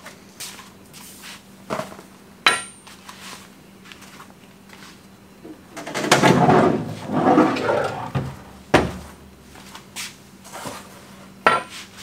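Knocks and clatter as a frost-free hydrant and a cardboard box are handled and set down on a pickup's tailgate, with a longer scraping rustle about six seconds in as the box goes onto it. A faint steady hum runs underneath.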